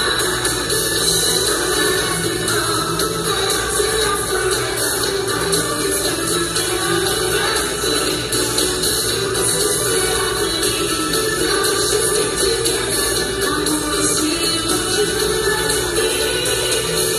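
Live pop concert music recorded from within the audience on a phone: a female singer with a full band, steady and loud throughout.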